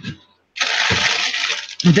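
Plastic packaging rustling for a little over a second, as a steady rush of crinkly noise.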